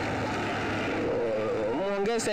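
A motor vehicle running close by, a steady engine hum and road noise, with faint crowd voices underneath.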